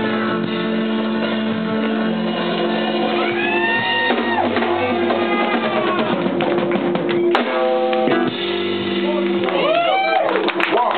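A live blues band playing, with an electric guitar lead of held and bent notes over bass and drums.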